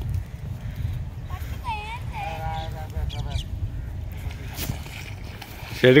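Faint voices calling out at a distance over a steady low rumble, with loud close speech starting near the end.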